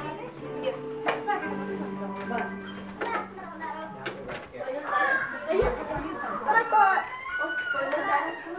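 Children's voices and chatter over background music with held notes. The voices grow louder in the second half, and a dull thump comes just past halfway.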